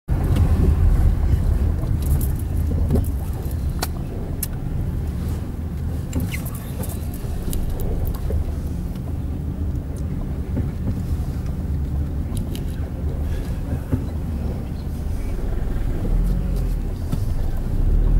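Engine and road rumble heard from on board a vehicle moving slowly along a street, a steady deep drone with a few faint ticks and rattles.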